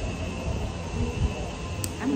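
Wind on the microphone: a low, uneven rumble, with a faint steady high hum and a single click near the end.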